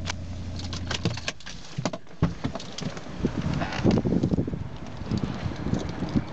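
Volvo XC90 D5's five-cylinder diesel engine idling with a low steady hum that stops about a second in. After it comes an irregular run of clicks, knocks and rustles from handling the car's interior and door, with one sharper knock a little after two seconds.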